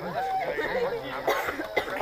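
People's voices talking, with a cough about midway.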